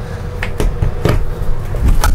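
Metal over-centre latch on a pop-up trailer's lowered roof being pushed down and locked: a few light clicks, then a heavier low thump near the end as it seats.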